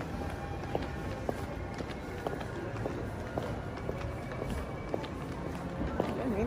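Footsteps on a hard tiled floor, light irregular clicks, over a steady hubbub of a large indoor space with music in the background.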